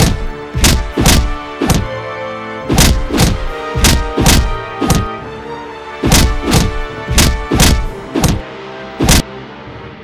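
Heavy thud impact sound effects of a cartoon animal fight, landing about three a second in runs with short breaks, the last single hit just after nine seconds in, over a steady background music track.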